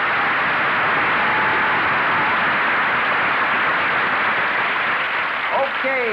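Audience applauding steadily after an introduction, dying away near the end.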